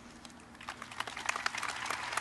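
Scattered applause from a sparse crowd, starting about half a second in and building to many quick, irregular claps.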